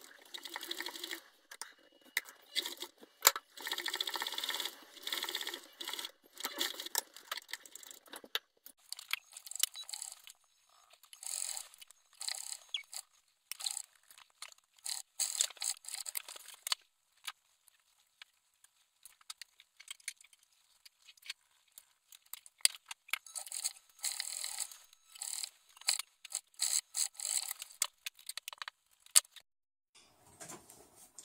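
An old sewing machine stitching cloth in short, stop-start runs, with the fabric rustling and scraping as it is fed and turned under the presser foot. The runs are longer and fuller in the first several seconds, then shorter and thinner with silent gaps between them.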